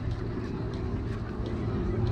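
Outdoor ambience: a steady low rumble with faint chatter of passers-by over it.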